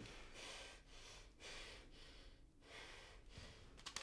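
Near silence: faint room tone with soft breathing that swells and fades a few times.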